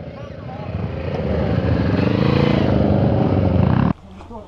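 A motorcycle engine riding up close, growing steadily louder over about three seconds, its pitch rising and then falling as it comes by, then cut off abruptly near the end.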